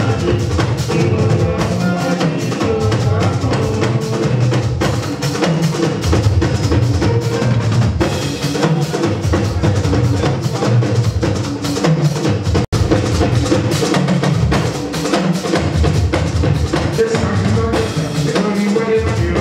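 Live fuji band music with drums and percussion prominent. The sound cuts out for an instant about two-thirds of the way through.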